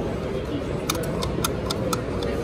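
Steady background noise of a busy exhibition hall, with a quick run of about six light, sharp clicks in the second half.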